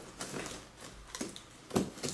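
Cardboard box being handled by its plastic carry handle: a few light clicks and scuffs, the sharpest one near the end.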